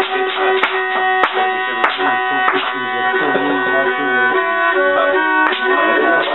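Circassian shichepshine (long-necked bowed fiddle) playing a dance tune, its held bowed notes carried over sharp rhythmic clacks from a wooden clapper and hand claps. Voices sing along for a couple of seconds in the middle.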